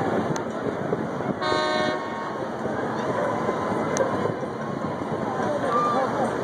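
A horn toots once, about half a second long, about a second and a half in, over a steady background of outdoor noise.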